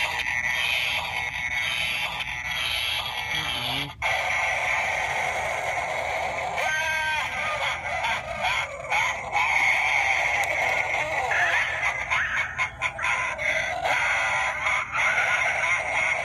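Animated hanging-witch Halloween prop, set off by its try-me button, playing its recorded witch voice and sound effects through its small built-in speaker. The sound runs without a break apart from a brief drop about four seconds in.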